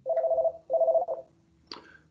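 Two electronic beeps, each about half a second long with a short gap between, each made of two steady tones sounding together, like a telephone signal tone.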